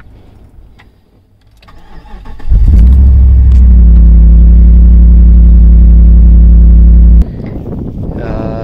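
A 2008 Jeep Commander's 5.7 L HEMI V8 is cranked by the starter and catches about two and a half seconds in, then idles loud and steady, so loud that the recording overloads. The sound stops abruptly about seven seconds in.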